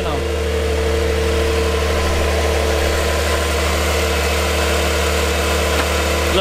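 Porsche 911 Carrera's flat-six engine idling with a steady, even hum.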